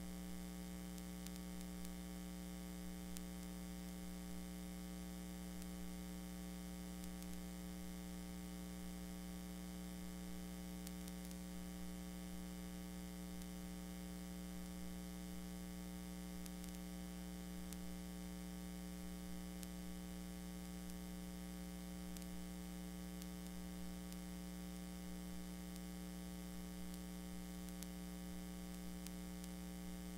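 Steady electrical mains hum, a buzz of many even overtones, with a light hiss underneath and no change throughout.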